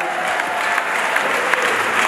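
Audience applauding, a steady wash of many hands clapping.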